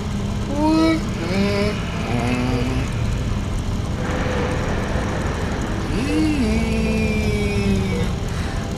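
A steady low mechanical hum, like a small motor running, with drawn-out gliding tones that rise and fall over it twice, once near the start and again in the second half.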